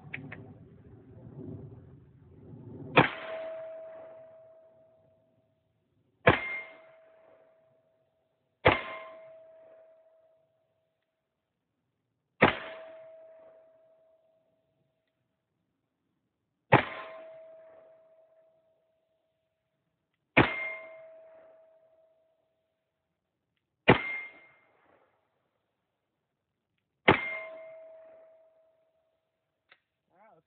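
Eight single 10mm shots from a Glock 40 MOS pistol firing Hornady 155-grain XTP loads, spaced about three to four seconds apart. Each shot is followed by the clang of the bullet striking a steel target, which rings and fades over about a second and a half.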